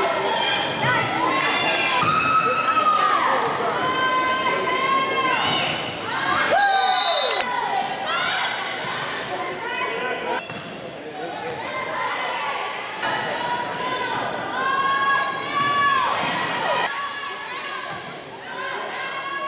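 Volleyball game sounds in a gymnasium: repeated high-pitched squeaks of shoes on the court floor and players calling out, with a few sharp hits of the ball, echoing in the large hall.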